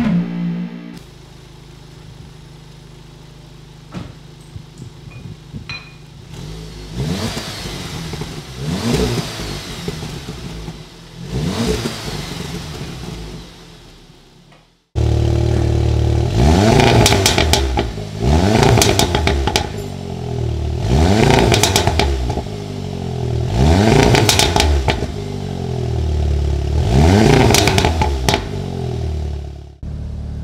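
VW Golf R's four-cylinder turbo engine idling and being blipped through its resonator-deleted exhaust, each rev rising and falling in pitch, repeated about every two to three seconds. About halfway through it cuts suddenly to a much louder, closer take of the same repeated revving at the tailpipes.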